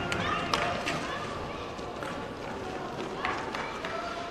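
Inline roller hockey in play in a hall: indistinct voices calling out, with a few sharp clacks from sticks and the puck.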